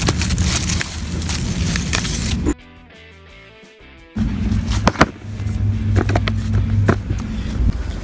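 Loud rustling of tomato plants and handling noise as ripe tomatoes are picked by hand, with a few sharp snaps. For about a second and a half in the middle, the noise drops away and quiet background music is heard.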